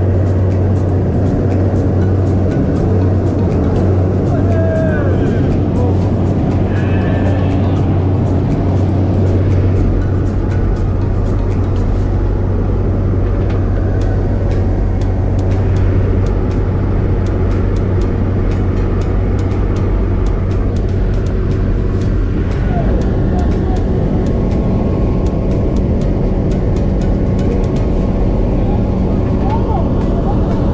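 A single-engine propeller plane running at high power through the takeoff roll and climb: a loud, steady engine and propeller drone, with wind buffeting a microphone mounted out on the wing strut. The tone of the drone shifts about ten seconds in.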